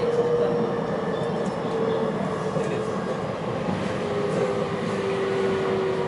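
Running noise inside a JR West 223 series 2000 electric train: a steady rumble of wheels on rail, with an electric motor whine that slowly falls in pitch as the train slows.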